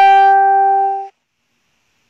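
A short musical sound: one note struck sharply, ringing with a steady pitch for about a second, then cut off abruptly.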